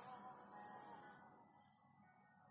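Near silence: room tone, with a faint wavering pitched tone that fades out about a second in.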